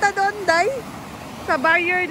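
A woman's voice talking over the steady rush of a shallow river's rapids running over rocks.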